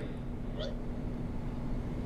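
Low background noise with a faint steady hum and no speech, broken only by a faint brief high sound about half a second in.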